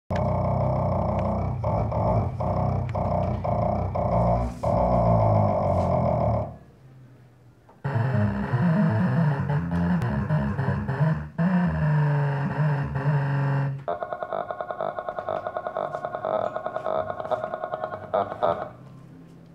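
Live electronic music from a hand-operated electronic instrument, in three dense passages. There is a brief pause about six and a half seconds in. From about fourteen seconds the sound turns into a fast, even pulsing of roughly six beats a second.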